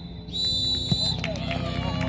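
Referee's whistle: one long, shrill, steady blast lasting under a second, the last of three blasts that signal full time. Voices follow.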